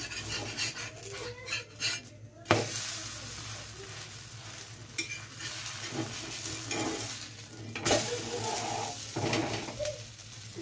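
Cheese sandwich sizzling in oil on a tawa (flat griddle), with a metal spatula scraping and knocking against the pan as the sandwich is pressed and turned. The sharpest knock comes about two and a half seconds in, and another comes near eight seconds.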